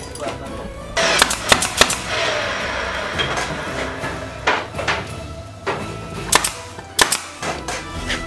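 Brad nailer firing nails through wooden trim into plywood: a quick run of about four sharp shots about a second in, then single shots every second or so.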